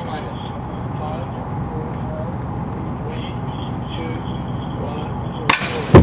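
Steady outdoor noise with faint distant voices. Near the end comes a sharp knock, then a loud metallic impact: the 1/3-scale ENUN 32P spent-fuel cask model hitting the steel puncture bar in a 1 m side puncture drop test.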